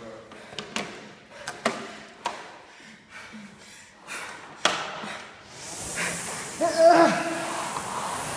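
Several sharp knocks and clicks, the loudest about four and a half seconds in. Then the air flywheel of a Concept2 indoor rower starts to whoosh and builds as rowing begins, with a voice calling out briefly near the end.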